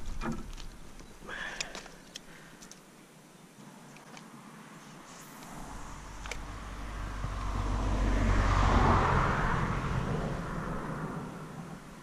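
A vehicle passing at a distance: a rumbling noise swells over a few seconds to a peak and then fades away. A few light clicks of handling come in the first two seconds.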